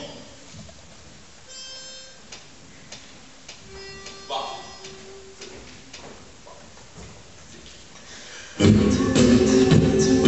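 A hushed pause with a few faint held notes, then about 8.6 s in an a cappella vocal group suddenly starts singing loudly in a large hall.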